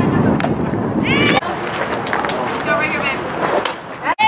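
High-pitched shouts and calls from players and spectators at a softball game, over low wind rumble on the microphone, with a couple of sharp clicks. The sound changes abruptly about a second and a half in.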